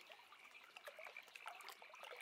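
Near silence: faint river ambience of softly trickling water with scattered small sounds.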